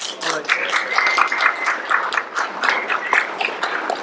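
Audience applauding, with dense clapping from many hands.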